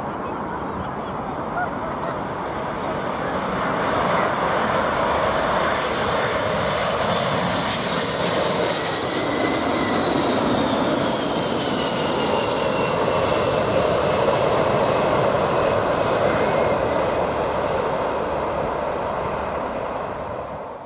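Four-engined Boeing 747 jet airliner passing low overhead on final approach, gear down. The jet noise swells from about four seconds in and stays loud. As the aircraft passes, a high engine whine falls in pitch.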